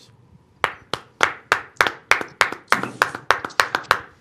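One person clapping hands in a steady rhythm, about a dozen claps at roughly three a second, starting about half a second in.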